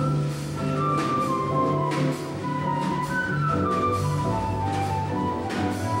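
Small jazz band playing live: a flute carries the melody over piano, walking upright bass and drums with cymbals.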